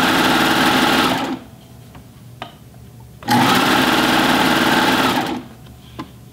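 Serger (overlock machine) running in two short bursts with a pause of about two seconds between, stitching elastic onto a pant waistband.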